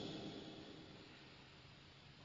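The echo of a processed spoken voice dying away smoothly into near silence.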